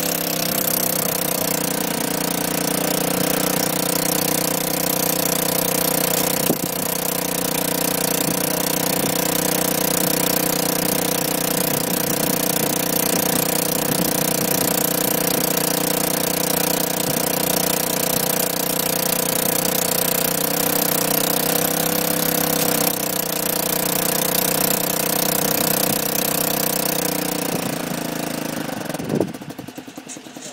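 The small engine of a paragliding tow rig running steadily, its pitch dipping briefly about two-thirds through, then dropping away sharply just before the end.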